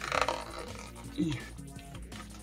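A short tearing rustle near the start as fingers pick at the security sticker sealing the end of a cardboard marker box, over steady background music.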